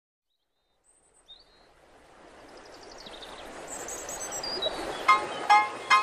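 Song intro: a noise swell that grows steadily louder, with a few high bird-like chirps and whistles stepping down in pitch. In the last second come three short, evenly spaced pitched notes as the music starts.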